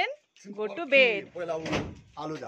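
A woman talking on the move, her voice rising high and loud about a second in, with a brief thud, like a door shutting, about three quarters of the way through.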